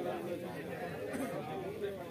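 Indistinct chatter of men's voices talking at once, with no clear words standing out.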